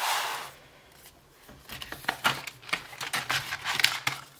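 Plastic binder sleeves and paper rustling as the pages of a ring-bound cash binder are handled and turned: a brief rustle at the start, then a run of small clicks and taps.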